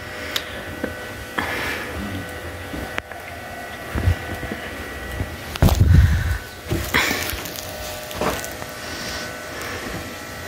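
Bedding being stripped off a mattress: the cotton sheet and pillowcase rustle and flap in several bursts, the loudest with a low whump about six seconds in as the cloth sweeps close by. A faint steady electrical whine runs underneath.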